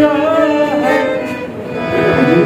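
Harmonium playing sustained chords and melody under a man's singing voice, with tabla accompaniment.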